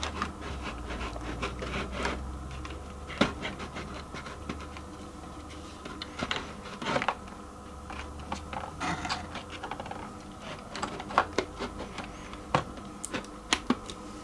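Hands handling a model building shell and settling it onto a model railway layout: scattered light clicks, taps and short scrapes, with a few sharper knocks about three seconds in and near the end.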